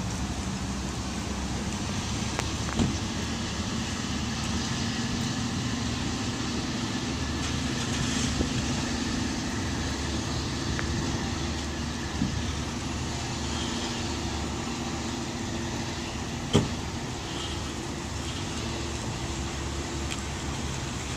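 Diesel commuter train pulling away from a station platform: a steady low rumble with faint wheel-on-rail clicks as it draws off. One sharp knock about three-quarters of the way through.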